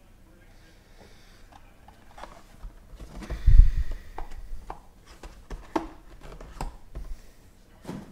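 Handling noise from a hard plastic card case being moved on a tabletop: a heavy low thump about three and a half seconds in, then several light clicks and taps.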